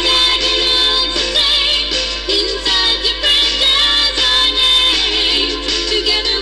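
Upbeat mid-1980s pop theme song with a sung vocal line over a full backing track.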